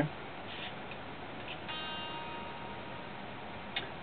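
Gibson G-Force robotic tuners' small motors turning the tuning pegs by themselves after a strum, retuning the guitar to half a step down. Faint ticking, with a short steady whine for about a second near the middle.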